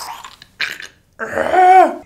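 A man's wordless, strained vocal cry of disgust, about a second long, that rises and then falls in pitch, after a short breathy exhale.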